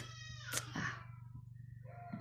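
Faint, drawn-out whining vocal sound with a wavering pitch that fades after about a second.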